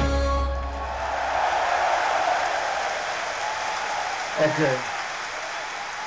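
Arena concert audience applauding at the end of a live metal song, whose last held chord fades out about a second in.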